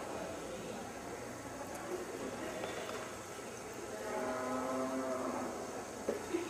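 A bovine mooing once, one held call of a little over a second about four seconds in, over a steady background hum.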